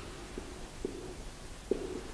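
Marker pen writing on a whiteboard: three soft knocks as the pen strikes and moves across the board, each with a short low ring from the board, the last and loudest near the end.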